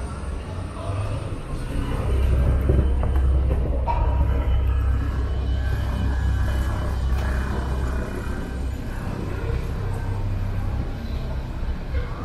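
Indoor escalator and building ambience: a low rumble that swells about two seconds in and eases after about eight seconds, under indistinct voices and faint background music.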